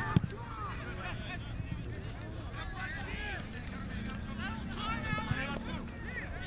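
Distant shouting from many voices across a soccer field, with wind rumbling on the microphone. A single sharp knock comes just after the start.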